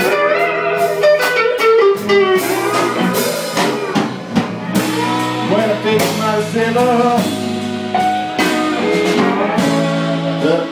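Live blues band: a lead electric guitar plays a solo with bent notes over rhythm guitar and a drum kit.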